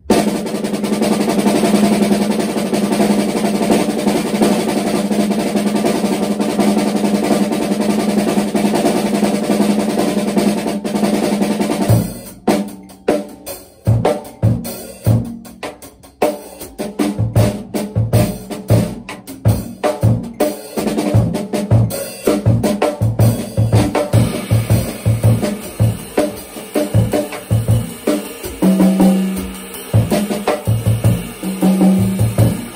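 Drum kit: for about the first twelve seconds, rapid, even strokes on the snare drum running together without a gap, as a technical warm-up exercise. It then switches to a groove on the full kit, with separate strokes and regular bass drum hits.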